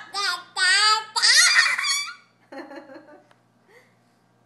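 A toddler's high-pitched, wordless sing-song vocalizing: several loud cries that slide up and down in pitch over the first two seconds, then a few quieter voice sounds.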